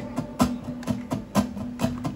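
Acoustic guitar strummed in a steady rhythm, its chord ringing between the sharp strokes of the strum.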